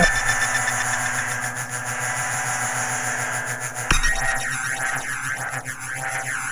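Electronic drone of held tones from the music backing. A sharp hit comes about four seconds in, and after it a fast, repeating whooshing sweep runs through the drone.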